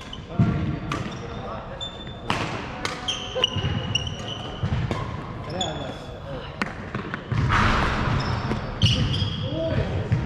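Doubles badminton play on a wooden sports-hall floor: sharp racket hits on the shuttlecock and repeated squeaks of court shoes on the floor.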